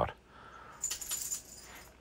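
Faint light metallic clinking and rattling of small hobby tools being handled in a plastic tool tray, mostly about a second in.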